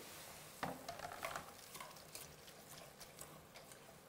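A metal spoon stirring rice and browned spaghetti strands frying in oil in a pot, with scattered light clicks and scrapes of the spoon against the pot over a faint sizzle.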